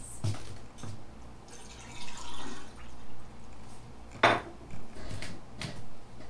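A few small clicks and knocks, with a soft hiss about two seconds in and one louder sharp click about four seconds in.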